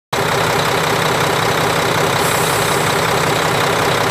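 2007 Mack Granite CV713 dump truck's turbocharged diesel engine idling steadily, heard close up in the open engine bay. It runs smoothly and evenly, with no misses or knocks.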